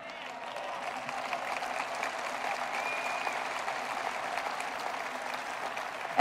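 Audience applauding, building over the first second or two and then holding steady.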